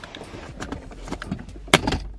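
Plastic wiring plug on the back of a car's 12-volt socket being wiggled loose, with small plastic clicks and rattles, then one sharp click near the end as the plug comes free.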